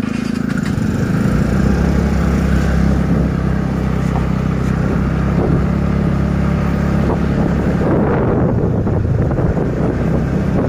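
Motorbike engine heard from the rider's seat, picking up as the bike pulls away and then running steadily while riding. Wind and road noise on the microphone grow louder about eight seconds in.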